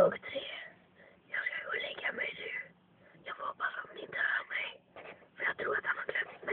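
Quiet whispered speech in short broken phrases with pauses between them, plus one short loud sound at the very start.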